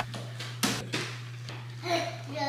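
A few knocks and thuds from household items being handled at a stacked washer and dryer, over a steady low hum, with a small child's voice near the end.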